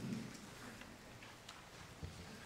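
Faint footsteps on a hard floor and a few scattered light clicks over a low murmur of a gathered crowd, as ushers walk with offering plates.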